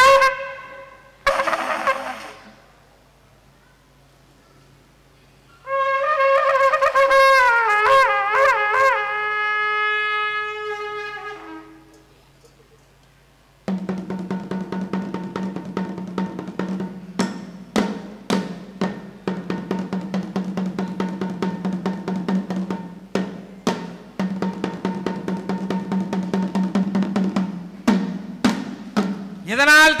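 A long curved brass horn of a Kailaya vathiyam ensemble sounds a held blast with a wavering pitch that sags at the end. After a pause, drums start beating rapidly over a steady low drone.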